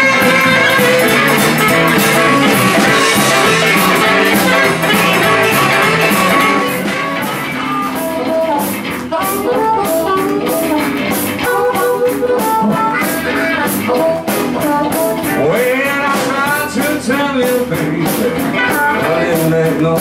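Live blues band playing: a tenor saxophone solo for the first several seconds, then a harmonica takes the lead with bending notes, over guitar accompaniment.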